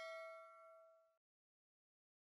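A metallic ding: one struck, bell-like ringing note with several clear overtones, fading out about a second in.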